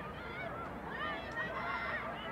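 Several high voices shouting and calling over one another during soccer play, short rising-and-falling calls overlapping throughout.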